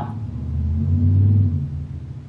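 A low rumble with a steady hum in it, swelling to its loudest about a second in and dropping off near the end.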